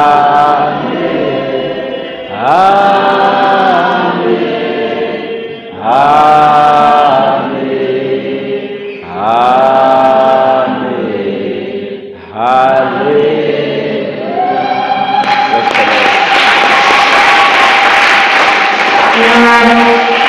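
A church congregation chanting 'Amen' together, drawn out and sung, about five times at roughly three-second intervals. About fifteen seconds in, one long held 'Amen' rises under a loud wash of many voices.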